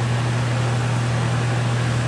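Steady low hum with an even hiss behind it, unchanging throughout: continuous background noise of the kind an air conditioner, fan or electrical hum makes.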